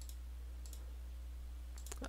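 A few faint computer mouse clicks, one near the start, another shortly after, and a quick cluster near the end, over a steady low electrical hum.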